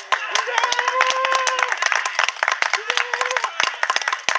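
Several people clapping irregularly, with drawn-out shouted calls from voices over the claps.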